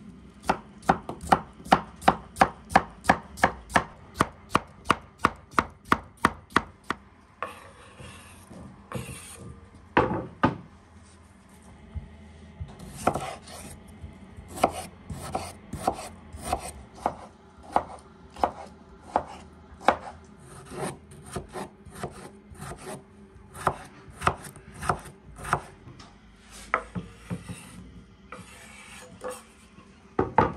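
Chef's knife chopping vegetables on a wooden cutting board: a fast, even run of cuts, about four a second, for the first several seconds, then slower, irregular cuts as a tomato is sliced.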